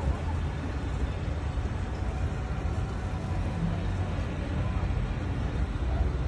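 Low, steady rumble of a small abra boat's motor under way, with the wash of the water and indistinct voices around it.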